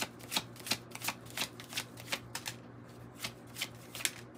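A deck of tarot cards shuffled by hand, the cards slapping softly about three times a second, with a short pause a little past halfway.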